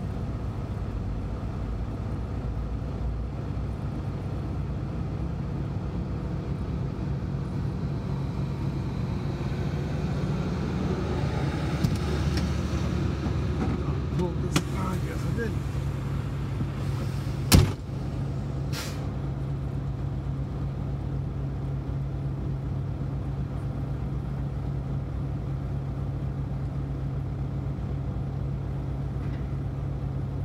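Semi-truck's diesel engine running steadily, a low even hum heard inside the cab. A single loud sharp click comes a little past the middle.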